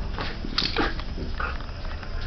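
French bulldog sniffing and breathing noisily in a few short bursts, one of them sliding down in pitch about half a second in.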